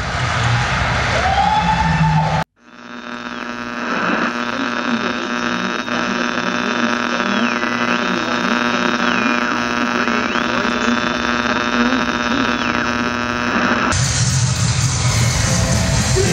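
Loud live band music that cuts off abruptly about two and a half seconds in. An electronic buzzing drone of many stacked steady tones then fades in, with a high tone that slides down and back up a few times over it. Loud band music comes back about two seconds before the end.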